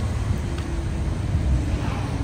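A steady deep rumble of background noise, with no bird calls standing out.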